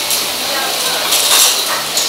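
Busy restaurant din: a steady hubbub of voices in the background with small clinks of dishes and cutlery.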